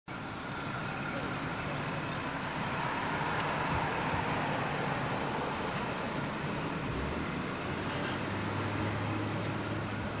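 Street traffic: steady road noise that swells as a vehicle passes a few seconds in. A low, steady engine hum sets in near the end.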